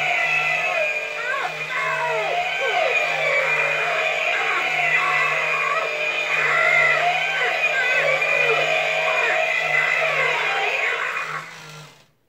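Hanging buzzsaw Halloween animatronic running its triggered cycle: a loud sound track of music with screaming and bellowing voices, over a steady pulsing hum, that stops suddenly near the end.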